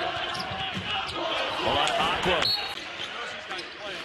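Basketball game sound in an arena: a ball dribbling on the hardwood court over crowd noise and voices, with an abrupt break about halfway through.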